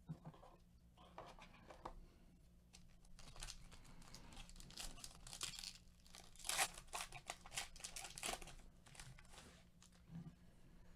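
Foil wrapper of a 2020 Panini Legacy Football card pack being torn open by hand, crinkling and crackling. The tearing starts about three seconds in and is loudest a little past the middle.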